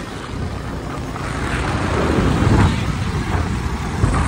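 Wind rushing over the microphone and motorcycle engine noise while riding at speed on a highway. The noise grows louder toward the middle as another motorcycle draws alongside.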